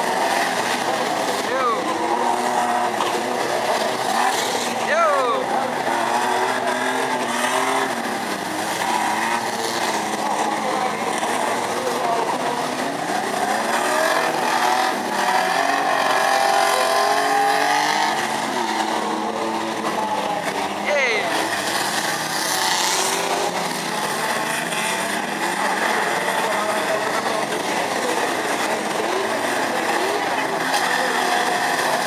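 A pack of banger racing cars running and revving together on a dirt track, several engines rising and falling in pitch at once, with a few brief steep rising whines.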